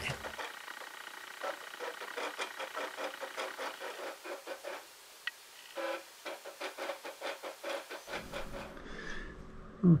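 Cricut Expression cutting machine cutting a design out of vinyl: its carriage and roller motors run in a fast, uneven series of short buzzing strokes as the blade traces the curves.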